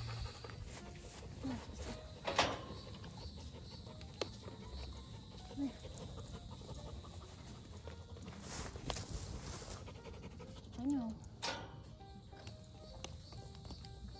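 Spray bottle of fly spray being squirted at a cow: four short hisses, one about two seconds in and three more in the second half, with quiet rustling in between.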